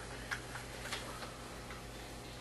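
A few faint, irregular light clicks over a steady low electrical hum, in a quiet room.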